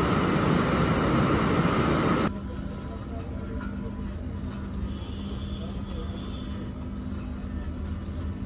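Fire under brinjals roasting on a wire grill, a loud steady rushing noise that cuts off abruptly about two seconds in. After that there is a much quieter background with a low steady hum.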